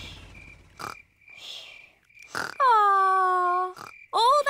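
Cartoon pig voices: short snort-like bursts, then one long held vocal 'ooh' sliding slightly down in pitch, while background music fades out at the start.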